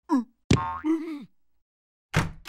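Cartoon sound effects with a larva's vocal noise: a quick falling boing-like glide, then a sharp hit about half a second in followed by a held tone and a short falling groan.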